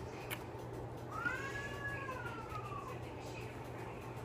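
A single drawn-out, high-pitched cry lasting about two seconds, rising at first and then slowly falling. A brief sharp click comes just before it, shortly after the start.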